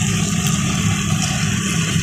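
Steady sizzle of chicken pieces, prawns and sausage frying in butter in a kadai, over a low steady hum.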